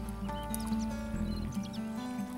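Background music with sustained held notes over a low bass line.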